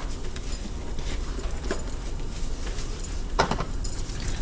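A deck of oracle cards being shuffled by hand: soft, irregular rustling and light taps of the cards, over a steady low hum.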